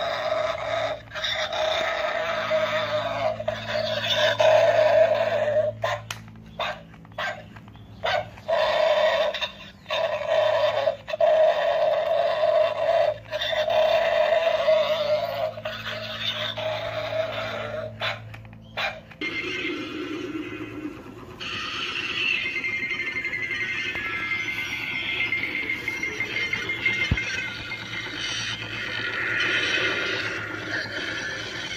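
Animated skeleton dog Halloween prop playing its recorded barking noises through its small built-in speaker, in repeated bursts with short breaks. About two-thirds of the way through, the sound changes to a different electronic sound effect.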